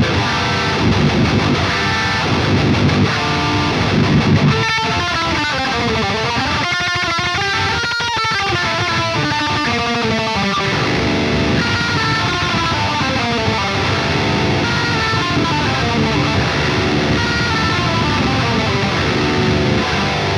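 Distorted electric baritone guitar with a 27.75-inch aluminum neck on a Jazzmaster-style body. It plays low chugging riffs for the first few seconds, then a fast run of single high notes, then riffs again mixed with melodic notes. The high notes have long sustain and bleed together.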